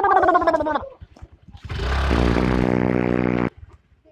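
A person's high, drawn-out vocal cry falling in pitch, then about a second and a half in a long, rough, guttural vocal sound lasting nearly two seconds that stops suddenly.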